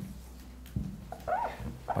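Dry-erase marker squeaking on a whiteboard as a number is written. There are a few short squeaks in the second half, one rising in pitch, over a low steady room hum.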